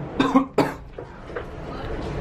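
A few short cough-like bursts from a man in the first second, then steady background noise.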